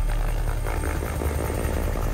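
Helicopter in flight, its rotor beating low and steady over the engine noise.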